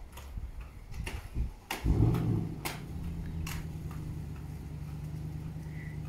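Roller skate wheels rolling on pavement: a few sharp clicks, then about two seconds in a steady low rumble starts and keeps going.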